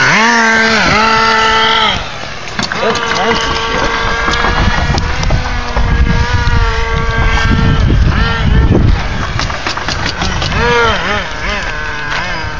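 A radio-controlled HPI nitro truck's small two-stroke glow-fuel engine. It opens with several quick throttle blips that rise and fall, then holds a steady high whine for several seconds as the truck runs off. It is blipped up and down again near the end.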